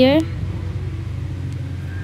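The last word of a voice trails off at the start, then a steady low hum continues with no other sound.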